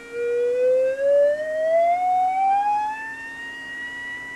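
Electronic test tone played through a phase shifter pedal, gliding smoothly upward in pitch to about double over three seconds. It swells and fades as its frequency moves in and out of phase in the shifter, and turns softer near the end where it nears a frequency that is very out of phase. A faint steady hum runs underneath.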